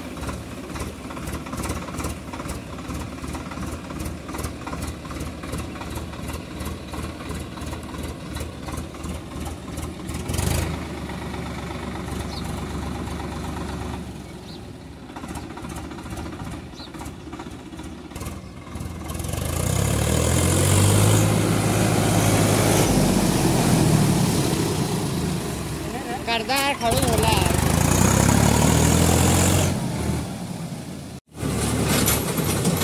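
Swaraj 855 tractor's three-cylinder diesel engine running as it drives through a shallow river, water churning around its wheels. It is fairly even for the first half. From a little past the middle it gets much louder, its pitch rising and falling as it is revved through the water.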